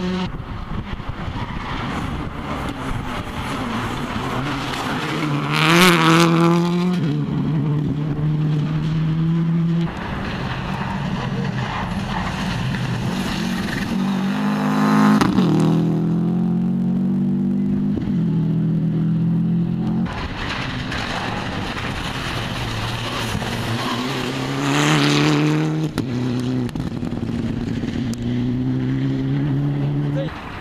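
Rally cars at full throttle passing one after another on a tarmac stage, one of them a Subaru Impreza. Each engine climbs in pitch and drops at every upshift, getting loudest as the car goes by, three times over.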